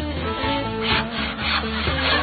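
Background music with a hand saw cutting a log on a sawhorse, a few rasping strokes about halfway through.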